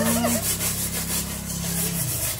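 Water spraying from a garden hose spray nozzle against a tiled pool wall: a hiss that pulses several times a second, over a steady low hum.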